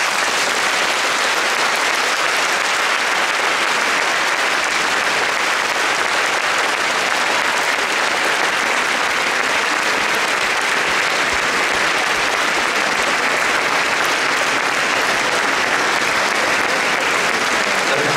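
Audience applauding steadily in a large concert hall, a dense even clapping that begins as the orchestra's last chord dies away.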